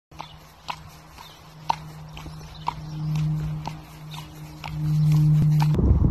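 A horse's hooves clopping on tarmac at a walk, about two crisp clops a second, over a steady low hum that swells twice. Near the end the sound cuts to a rushing noise.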